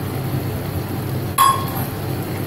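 A steel cup clinks once against the rim of a steel pressure pan about one and a half seconds in, ringing briefly, over a steady low background hum.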